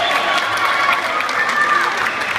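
Crowd cheering and applauding, with voices calling out over the clapping.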